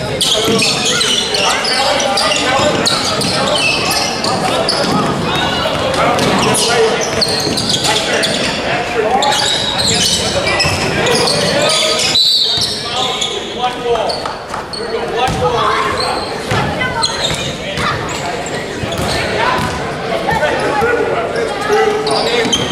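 Indoor basketball game: a basketball dribbling and bouncing on a hardwood gym floor, sneakers squeaking, and players calling out, all ringing in a large echoing gym.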